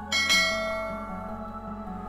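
A bell chime sound effect for the animated notification bell rings just after the start and slowly fades, over steady background music.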